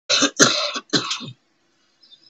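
A woman coughing three times in quick succession into her fist, clearing her throat.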